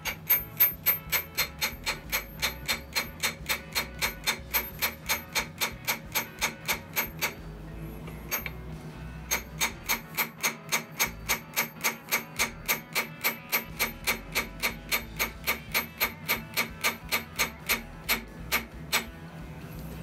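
Small hammer tapping lightly and steadily on the camshaft timing-gear lock nut of a Ford Model A engine, metal on metal, to snug the nut down. About three ringing taps a second, with a short pause about halfway through.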